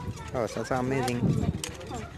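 People talking at close range in a language the recogniser did not transcribe, with a few short sharp clicks among the voices.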